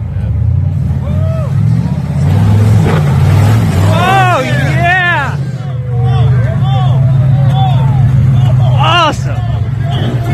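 A lifted Jeep's engine running hard under load as it climbs a mud mound, getting loud suddenly at the start and staying loud throughout. Onlookers yell and shout several times over it, loudest around four to five seconds in and again near the end.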